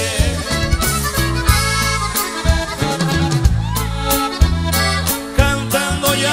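A live regional Mexican band playing an instrumental break between sung verses: a held lead melody over a stepping tuba bass line and steady drum beats.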